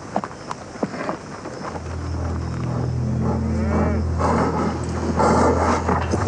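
Cattle bawling over a steady low rumble, with a few sharp knocks in the first second.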